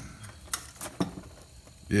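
A few light metal clicks and taps, about half a second apart, as a rack of ribs hung on a metal hook is worked up and out of a barrel cooker and catches on its O-Grate.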